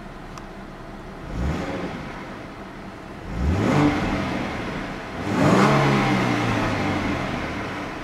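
2013 Ford Mustang's 3.7-litre V6 free-revved three times with the car standing still, heard from inside the cabin. Each rev climbs quickly and falls back, the second and third stronger than the first, and the last drops away slowly toward idle.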